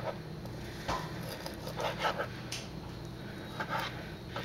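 Chef's knife cutting through raw pork spare ribs on a plastic cutting board: a few short, soft cuts and knocks of the blade against the board, about a second in, around two seconds and near the end.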